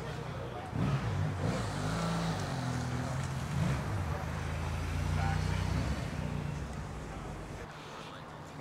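Ford Bronco's engine as the SUV drives slowly past at low speed. It gets louder about a second in and fades away after about six seconds.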